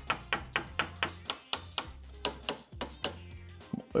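A hammer tapping a small metal pin into the cast-iron body of a vise, in quick even taps about four a second.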